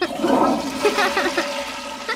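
Cartoon toilet-flush sound effect: rushing, gurgling water that slowly dies down.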